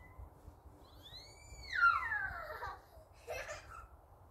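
A young child's long high-pitched squeal that rises in pitch and then slides down, followed by a short second call near the end.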